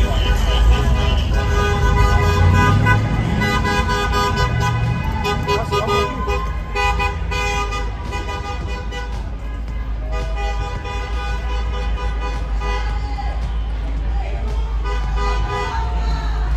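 Car horns honking in celebration, several held at once in long steady blasts that thin out after about ten seconds, over the rumble of street traffic.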